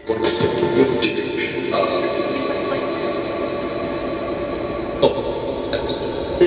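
Spirit box output: the SCD-1 ghost box software's sweeping audio played through a Portal echo box, a continuous wash of hiss and garbled fragments that comes in suddenly at the start, with a few brief clicks along the way.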